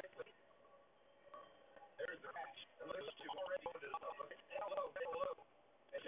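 Indistinct, muffled speech from a television broadcast playing in a small room, thin and telephone-like in tone. It is faint for the first couple of seconds, then runs almost continuously from about two seconds in.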